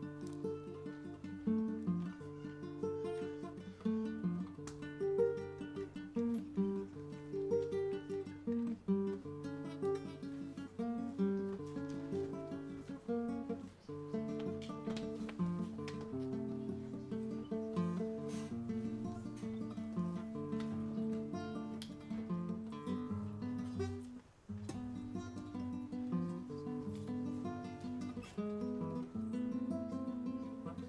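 Solo acoustic guitar played fingerstyle: a steady run of plucked notes and chords, with a brief break about 24 seconds in.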